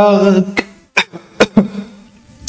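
A man's voice holding one steady, buzzing note for about half a second, followed by a few short, sharp clicks.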